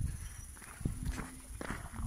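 Footsteps on a concrete path: a few irregular steps, with a low rumble on the phone's microphone.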